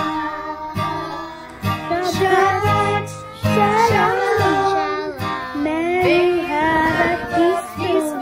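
Children's choir with a woman's voice singing a song together over an instrumental accompaniment.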